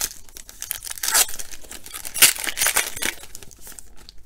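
Foil trading-card pack being torn open and crinkled by hand, with the loudest rips about a second in and just after two seconds.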